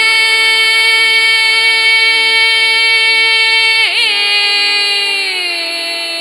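A woman's singing voice holds one long note of a traditional folk melody. About four seconds in it makes a quick turn, then slides down to a lower note, over a steady low drone.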